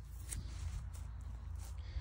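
Quiet outdoor background: a low steady rumble with a few faint rustles.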